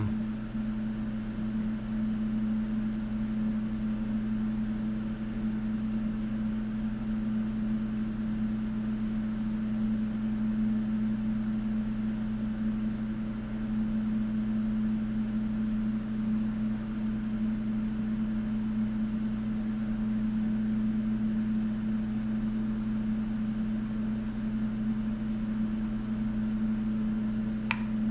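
Steady low machine hum: a few fixed tones, one of them strongest, with no change in pitch or level. A single short click sounds near the end.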